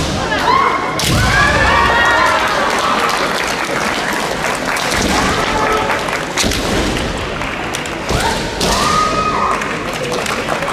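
Kendo bout: drawn-out kiai shouts from women competitors, rising and falling in pitch, repeated about four times, over thuds of stamping feet on a wooden floor and knocks of bamboo shinai.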